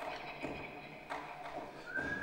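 Sparse percussive clicks and knocks, two sharper ones about half a second and a second in, over faint sustained tones: a quiet passage of free improvisation.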